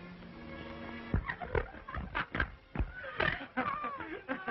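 Film soundtrack music with held tones, which gives way about a second in to a run of short, irregular sounds without words: sudden knocks mixed with brief cries that slide in pitch.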